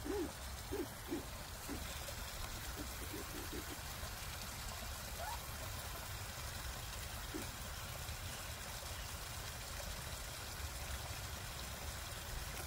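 Steady trickle of water falling over a small spillway into a pond. A few soft, short, low goose calls come through, mostly in the first few seconds.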